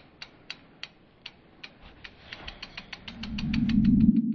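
Logo-animation sound effect: a run of sharp ticks that speed up steadily, with a low swell rising under them through the second half and loudest at the end.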